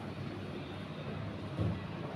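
Steady low rumble of background noise, with a dull thump near the end.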